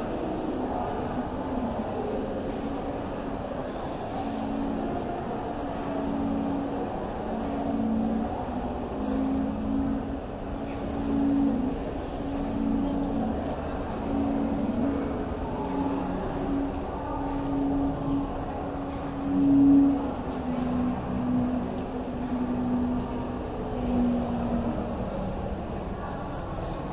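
Steady background hum of a large indoor shopping mall, echoing off hard floors, with faint distant voices and occasional light ticks.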